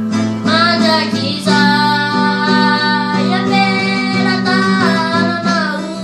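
A boy singing while strumming an acoustic guitar, the sung phrases gliding over steady guitar chords.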